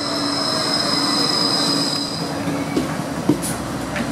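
Gold Coast G:link light rail tram, a Bombardier Flexity 2, pulling into the platform with a steady high-pitched whine over its running noise; the whine fades a little over halfway through. A sharp knock follows near the end.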